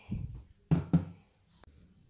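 Kitchen handling knocks: a dull thump, then two sharp knocks about a quarter second apart, as sauce bottles are put down and picked up beside the pot.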